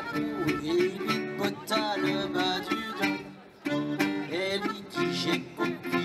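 Dance-band music: a wavering lead melody over a plucked-string accompaniment, with a brief drop in the music about three and a half seconds in.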